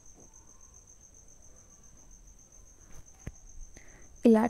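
A steady high-pitched insect trill, faint, with a single soft click a little over three seconds in.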